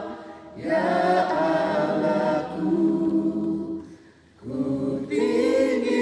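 A small group of men's and women's voices singing an Indonesian worship song together a cappella, without accompaniment. Two sung phrases, each starting after a short breath pause, one pause at the very start and one about four seconds in.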